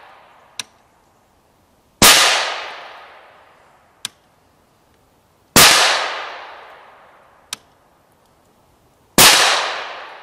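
Three suppressed rifle shots from a BCI Defense rifle with a Torrent suppressor, about three and a half seconds apart. Each is a sharp crack with a long echo that fades over a second or two. A short, faint tick follows a couple of seconds after each shot.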